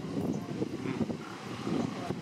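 Ocean surf breaking and washing over coastal rocks, a steady low rushing, with wind buffeting the microphone.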